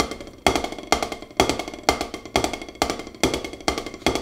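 Drumsticks striking a practice pad in slow, even alternating strokes, right hand then left, about two a second: the start of practising a roll with both hands before speeding it up.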